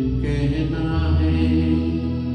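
A man singing a Hindi film song into a handheld microphone, holding long, steady notes over a musical accompaniment with a steady low bass.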